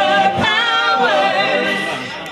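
A lead female vocalist and backing singers hold a sung note together in harmony with vibrato, with the guitar and cajón dropped out. This is the closing note of the song, and it eases off slightly near the end.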